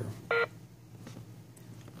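One short electronic beep from a US10C fingerprint time clock about a third of a second in, sounded as a finger is pressed on its scanner during enrollment.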